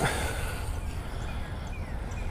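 Outdoor pond ambience with a steady low rumble, and a few faint, short, falling bird calls spaced through it.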